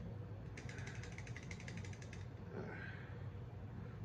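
Stout poured from a can into a glass: a rapid run of fine crackling ticks for about two seconds, then a faint fizz as the head rises.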